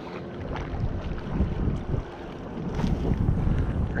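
Wind buffeting the microphone in gusts over choppy lake water, growing louder past the halfway point.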